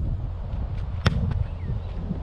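A football struck hard with the foot off the tee: one sharp kick about a second in, over a steady low rumble.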